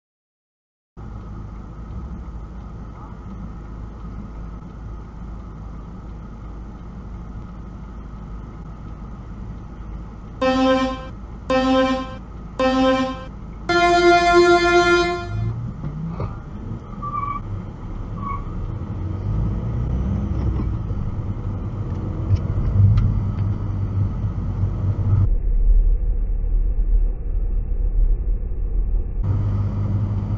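Car horns in stopped traffic: three short toots about a second apart, then a longer blast at a higher pitch lasting about a second and a half. Around them, steady car-cabin engine and road noise that grows louder once the traffic moves off.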